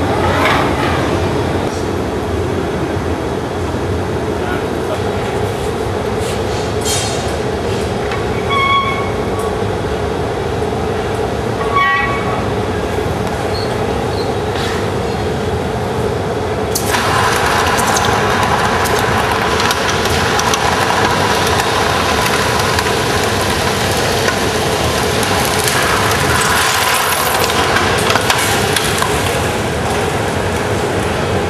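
Steady roar of glassblowing hot-shop furnaces and burners. A brighter hiss comes in suddenly a little past halfway and holds, and two brief ringing tones sound about nine and twelve seconds in.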